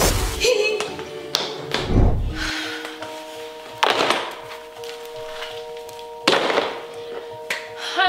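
Several heavy thuds over background music with held notes: a deep thud about two seconds in, then sharper hits about four and six seconds in.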